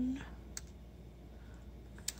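Faint clicks of keys being pressed on a Texas Instruments TI-30X IIS scientific calculator as a sum is entered.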